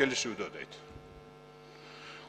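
A man's speech trails off in the first half second, followed by a pause filled with a faint, steady electrical mains hum.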